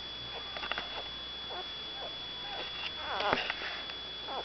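One-day-old petit basset griffon vendéen puppy whimpering: several short squeaks that fall in pitch, the loudest ones clustered about three seconds in.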